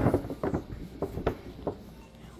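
Several soft, irregular knocks and rustles of handling noise while the camera is being moved about.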